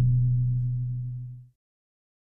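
Final held note of a logo outro jingle: a low steady tone that fades and ends about a second and a half in.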